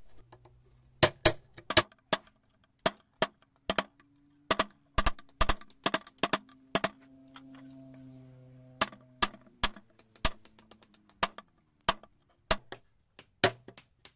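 A hammer driving a wood chisel into hardwood: sharp, irregular taps, roughly two a second, as the chisel cuts the outline of a recess. A low steady hum runs under the first two-thirds of the taps.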